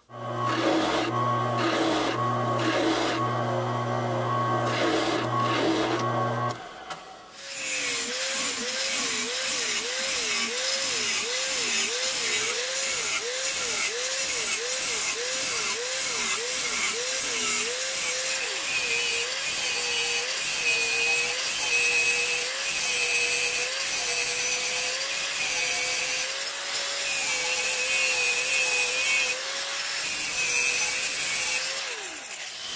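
A drill press boring through steel plate with a hole cutter for the first six seconds or so. Then, after a brief pause, an angle grinder's cut-off disc slices through the steel with a hissing grind, its pitch dipping and recovering rhythmically under load at first, then holding steadier.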